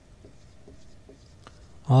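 Faint scratching and tapping of writing by hand, with small scattered strokes.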